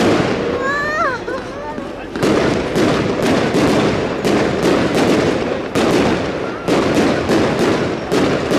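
Aerial fireworks bursting in quick succession: sharp bangs about two or three a second, with crackling in between.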